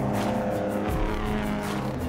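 Diesel engines of several modified semi trucks running hard together as they race around a track, with music underneath.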